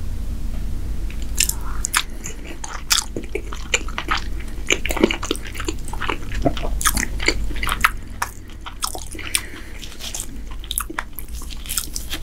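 A person chewing a mouthful of ribbon pasta with meat sauce, with many sharp, wet mouth clicks and smacks. The chewing gets quieter about eight seconds in.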